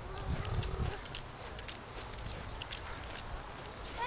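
Outdoor ambience: wind rumbling unevenly on the camcorder microphone, strongest in the first second, with scattered faint, short high chirps.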